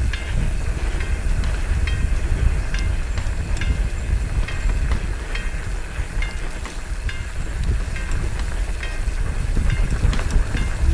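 Mountain bike rolling down a dirt singletrack: deep wind and tyre rumble on the bike-mounted camera's microphone, with short sharp ticks about once a second.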